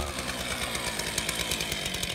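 Stihl chainsaw idling steadily, its throttle held off between short revs.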